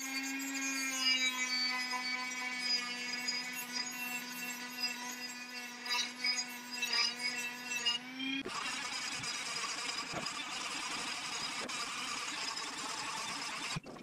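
Handheld electric rotary tool running with a steady high whine as it grinds back the sharp edges of a steel wave brake disc, deburring them so they won't cut into the brake pads. About eight seconds in the sound turns rougher and noisier.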